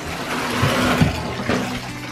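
Bathtub tap running, water pouring from the spout into a filling tub, with a couple of soft low thumps near the middle.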